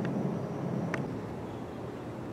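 Steady low background noise with no clear source, with one faint click about a second in.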